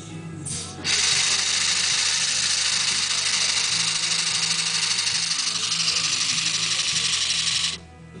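Motor-driven Lego Technic pneumatic pump running as an automatic compressor charging its air tank, a loud fast rhythmic mechanical whirr. It starts abruptly about a second in and cuts off suddenly near the end.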